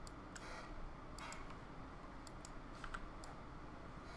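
About eight faint, scattered clicks from a computer mouse and keyboard, over low room noise.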